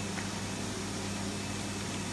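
Steady electric hum and airy hiss of a flatbed cutting plotter standing powered on between jobs, with one faint click shortly after the start.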